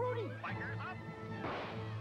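Soundtrack of an animated Trix cereal TV commercial playing at low level: music under a cartoon character's voice, with a short swell of noise late on.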